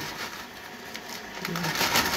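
Rustling and light handling noises of objects being moved on a table, with a louder rustle near the end.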